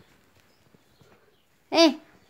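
A baby's short, loud vocal shout, a single 'eh' that rises and falls in pitch near the end, after a quiet stretch with a few faint rustles.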